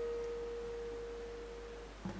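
Acoustic guitar's final note ringing out as one clear, steady tone, fading slowly and dying away just before the end.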